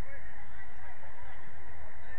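Distant shouts of footballers calling to each other across the pitch, short rising and falling cries over a steady low rumble.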